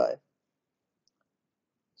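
A woman's spoken word ends at the start, followed by near silence with one very faint click about a second in.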